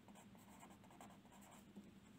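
Faint scratching of a pen on paper as a word is written out in a run of quick strokes.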